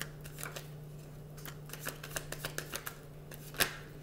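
A deck of tarot cards being shuffled by hand: quick, irregular card clicks and flutters, with one sharper snap about three and a half seconds in. A steady low hum runs underneath.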